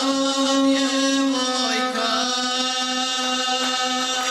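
Gusle, a single-stringed bowed folk fiddle, sounding a steady drone under a boy's chanted epic singing, his voice held on long, mostly level notes.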